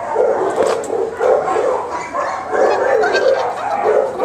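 Dogs barking over and over, about three barks a second, without a break.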